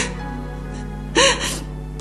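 A woman sobbing over soft background music: a gasp at the start and a louder gasping sob just past a second in.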